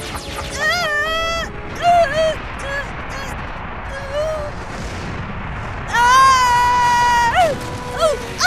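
Cartoon characters crying out in fright: short "ah" cries in the first couple of seconds and one long, high scream about six seconds in. Under them run background music and a steady rumbling sound-effect bed.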